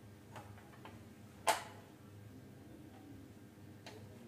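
A few light clicks and one sharp click about one and a half seconds in, with another near the end: a screwdriver and hands working on the plastic insides of an opened Canon G3020 inkjet printer.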